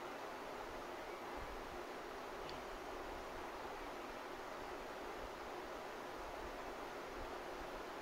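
Steady low hiss of room noise, with faint rustling as a wired terminal is pushed into a small plastic connector housing by hand, and one faint tick about two and a half seconds in.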